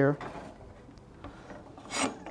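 Faint rubbing and scraping handling noise as a panel-antenna access point on a mounting pole is picked up and lifted.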